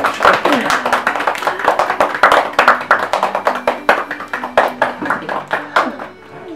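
A small group of people clapping their hands in an irregular patter, with children's voices over it.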